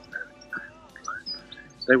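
Faint live band music with a wavering melodic line, heard quietly in a pause between a man's words; his speech starts again near the end.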